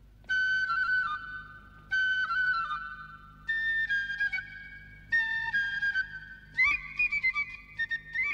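A simple tune played on a flute: four short phrases of held notes, each starting about a second and a half after the last, then a higher rising figure near the end.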